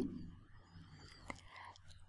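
Very quiet room tone after a woman's voice trails off at the start, with a couple of faint clicks.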